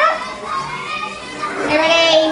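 Young children's voices talking and calling out, with a loud call near the end.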